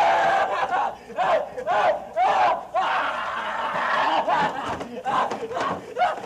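A man crying out over and over in anguish, in short wailing cries broken by sobbing, with one longer drawn-out cry about three seconds in.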